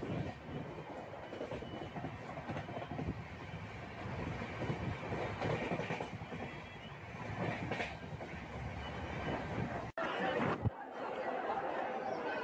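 Passenger train running along the track, heard from inside the carriage as a steady rumble of wheels and body noise. It cuts off abruptly about ten seconds in, and people talking take over near the end.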